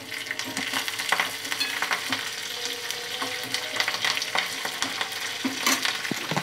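Hot oil sizzling with many small pops as curry leaves, green chillies, dried red chillies and peanuts fry in a stainless steel kadai for a tempering, while a steel spoon stirs them around the pan.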